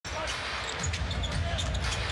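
Basketball game sound in an arena: a steady crowd murmur with a ball dribbled on the hardwood court and a few short sneaker squeaks.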